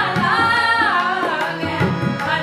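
Shabad kirtan: women singing together in a gliding melody, accompanied by harmoniums and tabla.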